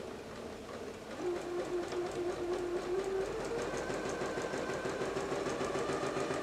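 Electric domestic sewing machine stitching a quarter-inch seam through quilting cotton. Its motor hum comes up about a second in and runs steadily, rising slightly in pitch, with faint regular needle ticks.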